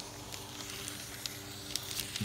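Felt-tip marker drawing across thin paper laid over fabric: a faint, steady scratchy hiss with a few light ticks.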